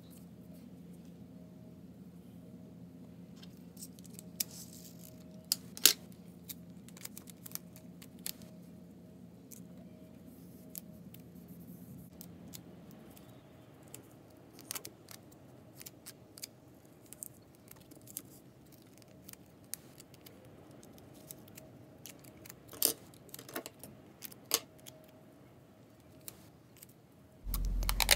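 Scissors snipping and clear tape being handled on cardboard: scattered sharp snips and clicks over a faint low hum that fades out about halfway.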